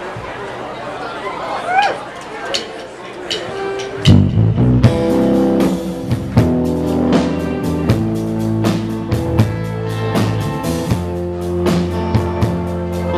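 Audience voices, then about four seconds in a live rock band starts a slow song's intro: drum kit with a steady beat, bass guitar and electric guitar.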